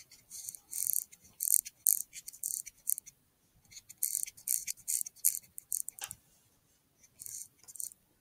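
Wild boar foraging: irregular bursts of crackling and rustling as it roots and feeds with its snout in the ground, in three clusters, the first through the first three seconds, another from about four to five and a half seconds, and a short one near the end.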